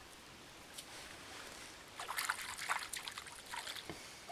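Shallow stream water trickling softly over sand and stones, with a run of small irregular clicks and crackles from about halfway through.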